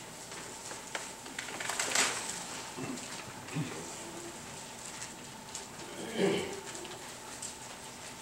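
Paper rustling as Bible pages are turned, with faint murmured voice sounds; the clearest rustle comes about two seconds in and a short voice-like sound about six seconds in.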